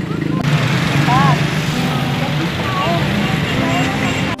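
Busy street ambience: traffic running steadily, with people's voices in the background.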